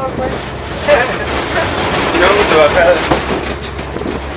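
Engine rumble and road noise of a truck driving on a dirt road, heard from its open bed, with people's voices talking over it.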